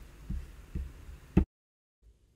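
A couple of soft, low thumps and then one sharp click, picked up by a desktop microphone. Straight after the click the sound cuts off to dead silence as the audio drops out.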